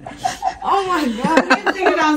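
People chuckling and laughing, mixed with bits of talk.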